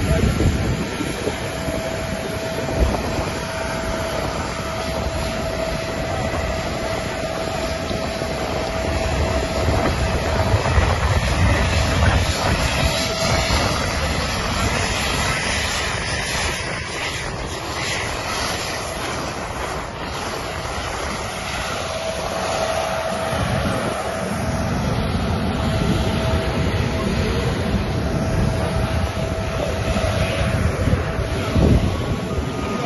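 Jet airliner running on the apron: a continuous roar with a steady whine that drops out midway and comes back later.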